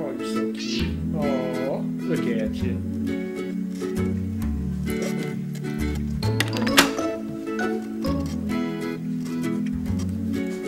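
Domestic cat meowing at a door to be let out, one meow that rises and falls in pitch about a second in, heard over steady background music.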